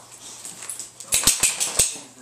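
A boxer dog scrambling to its feet on carpet: a quiet scuffle that turns into a loud rustling scramble with four low thumps about a second in.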